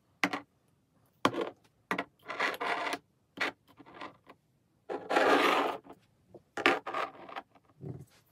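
Glass mason jars being set down and slid into place on a tabletop: a series of short knocks and scrapes, the longest and loudest about five seconds in.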